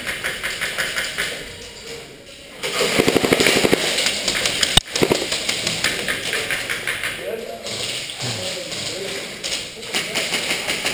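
A rapid full-auto burst from an airsoft gun, about a second and a half of fast, even clicks, followed by a single sharp knock.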